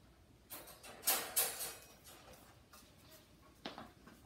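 Wire dog crate rattling as its door is moved, a jangling burst of a second or so, then a single click near the end.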